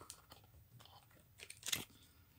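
Faint handling of a game card drawn from the deck: small clicks and rustles, then a short scrape about one and a half seconds in.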